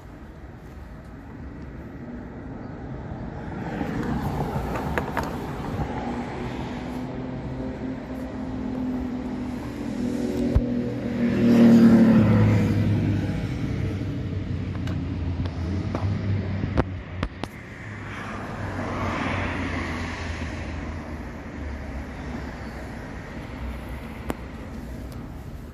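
Road traffic: a vehicle's engine swells as it passes about halfway through, then fades, with a softer pass near the end over a steady traffic hum. A few sharp clicks fall in between.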